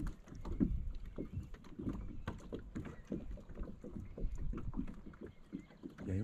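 Small waves lapping and slapping against the hull of a small boat, in irregular soft splashes and knocks.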